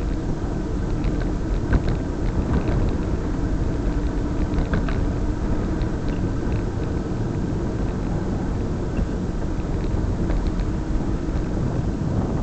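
Steady wind rush and road rumble on the microphone of a camera travelling along a road, with a few faint clicks and rattles scattered through.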